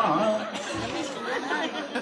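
Several voices talking over one another: a murmur of chatter, with no single clear speaker.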